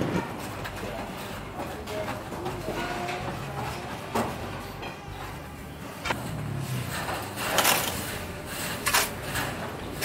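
Construction-site sounds: a few faint knocks, then in the later seconds shovelfuls of sand thrown against a wire sifting screen, each a short hissing rush of grains, about one every second and a half.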